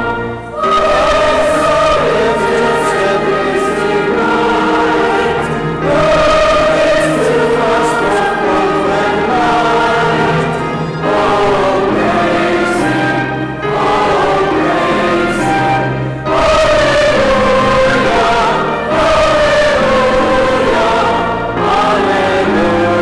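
A choir singing a sacred piece in phrases a few seconds long, each separated by a brief breath, with steady low notes underneath.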